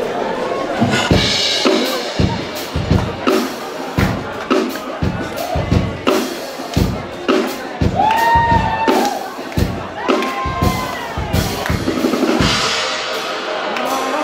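A live band plays a song's intro, led by a drum kit with bass drum and snare hits about twice a second. Two held pitched notes sound about two-thirds of the way through, over audience chatter.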